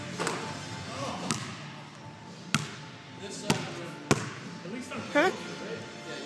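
Basketball bouncing on a hardwood gym floor: sharp bounces about a second apart that come closer together, then stop.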